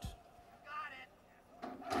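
Horse-race starting gate springing open with a sudden clatter about one and a half seconds in, the start bell beginning to ring with it.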